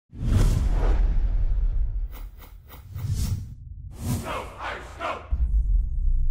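Intro music sting made of whooshes and deep bass hits, with a quick run of clicks about two seconds in and a low bass boom near the end.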